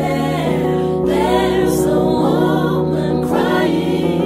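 Gospel choir singing with instrumental accompaniment: sung voices glide and bend over sustained low notes that change chord about a second in and again a little past two seconds.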